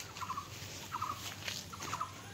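A bird's short rattling calls, about four quick bursts of rapid notes half a second apart.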